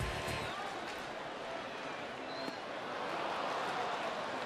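Ballpark crowd noise: a steady murmur of many voices that swells slightly about three seconds in.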